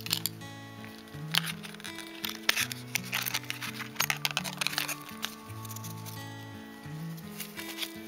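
Background music of held low notes, over clicks and rustles from hands handling an enamel pin on its card backing and tissue paper.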